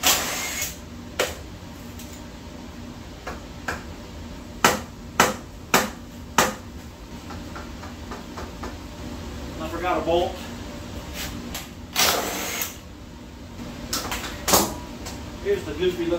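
Sharp metal clanks and knocks of wrenches working on a Ford 390 FE V8 as its starter is unbolted. There are about nine separate knocks, and two short noisy bursts: one right at the start and one about twelve seconds in.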